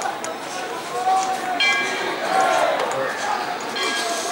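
Indistinct voices of people talking in the background, with a brief high-pitched tone about one and a half seconds in and a few faint clicks.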